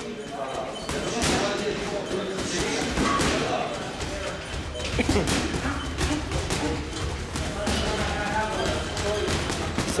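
Boxing gloves punching a hanging heavy bag: irregular thuds and slaps of combinations, with voices in the background.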